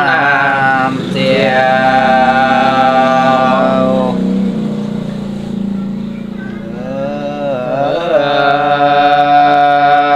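Solo unaccompanied voice singing a Dao folk song (páo dung) in long, slowly held notes with gliding ornaments at the start of each phrase. One phrase fades out around the middle, and a new phrase begins about seven seconds in.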